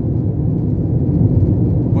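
Steady low rumble of a car travelling at highway speed, its road and engine noise at an even level throughout.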